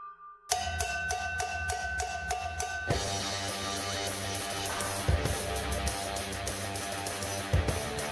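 A pop-rock backing track with guitar starts about half a second in with a pulsing, repeating pattern. About three seconds in it opens into a full mix, with an acoustic drum kit played along over it.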